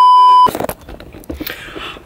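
A steady 1 kHz test tone, the kind played with TV colour bars, holding for about half a second and cutting off suddenly. It is followed by quieter scattered clicks and noise.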